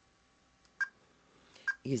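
Computer mouse clicking twice, a short sharp tick with a slight ping each time, just under a second apart, as points are entered one by one to trace a shape.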